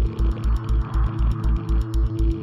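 Background music with a steady low beat, about four beats a second, under held sustained tones.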